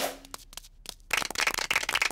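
A drum roll breaking off at the start, then small hands clapping, sparse at first and thickening into steady applause about a second in.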